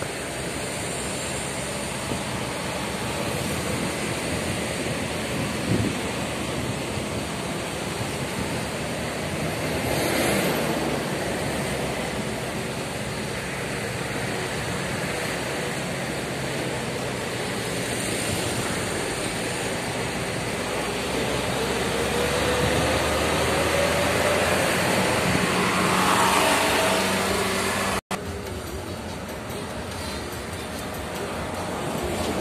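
Steady road noise of a car driving, heard from inside the car, with a swell about ten seconds in. In the last third an engine note rises in pitch over several seconds. Near the end the sound drops out briefly at a cut.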